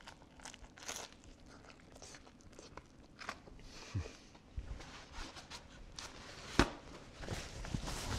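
Faint crunching and chewing as a bite is taken from a grilled ciabatta panini, in scattered small crackles with one sharper click past the middle. Near the end a paper towel rustles as it is wiped across the mouth.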